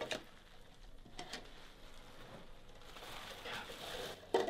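A few faint clicks and knocks of things being handled, over low room tone.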